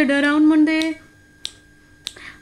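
Unaccompanied female voice holding a sung note that fades out about a second in, with finger snaps keeping time: one under the note's end and one clear, sharp snap in the quiet after it.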